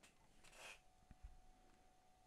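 Near silence: room tone, with a faint brief rub about half a second in and a couple of faint ticks a little after.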